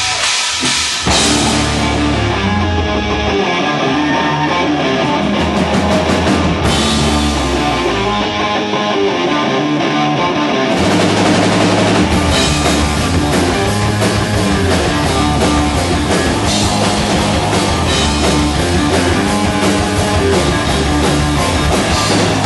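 Thrash-punk band playing live: distorted electric guitar riffing over a drum kit. The full band comes in about a second in, and the drums and cymbals get busier about eleven seconds in.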